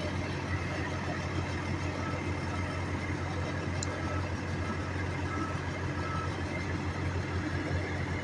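Concrete mixer truck's diesel engine idling steadily, with a constant low hum.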